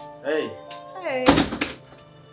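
A front door pushed shut with a loud thunk about a second and a quarter in, over soft background music, with a brief voice sound just before it.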